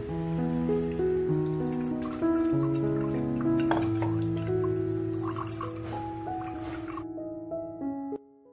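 Background music of held, keyboard-like notes. Under it, a thin stream of milky liquid trickles and drips from a strainer into a steel bowl.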